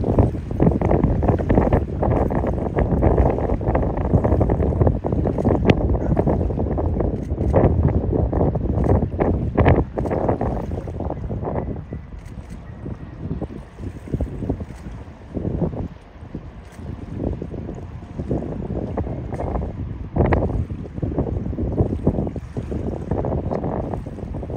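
Wind buffeting the microphone in uneven gusts, a loud low rumble that eases somewhat about halfway through.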